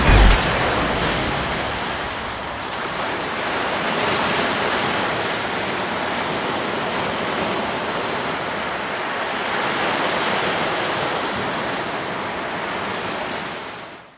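Ocean surf breaking on a sandy beach: a steady rushing wash that swells and eases slowly as waves come in, fading out at the very end.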